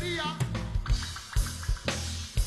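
Live reggae band playing, the drum kit to the fore: kick and snare strokes about twice a second over bass and electric guitar, with a vocal line trailing off at the start.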